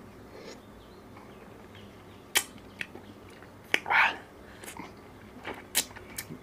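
Close-miked mouth sounds of eating a soft ice cream bar: a few sharp wet lip and tongue smacks and a slurp about four seconds in, after a quiet first two seconds.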